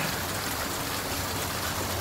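Fountain water jets splashing steadily into the basin.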